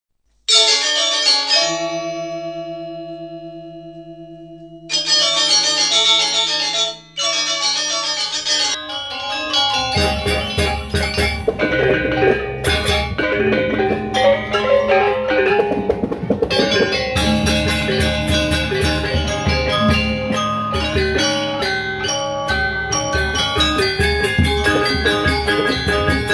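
Opening intro music of sustained, ringing tones in three short sections. From about nine to ten seconds in, a gamelan of bronze-keyed metallophones and kendang hand drums comes in, playing a dense run of mallet strokes over steady drum beats.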